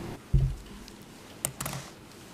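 A short low thump, then two sharp clicks about a second later, over quiet room tone.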